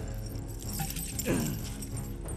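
Iron chains and shackles rattling and clinking as a chained man drags his arm across a stone floor, over sustained background music. A sound slides downward in pitch a little past halfway.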